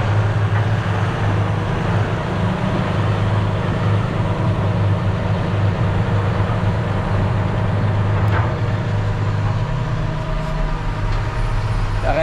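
Vehicle engine running steadily at a constant speed, a continuous low drone with no change in pitch.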